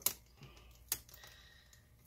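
Two sharp plastic clicks, one at the start and one about a second in, as a pry tool works along a laptop's adhesive-held display bezel.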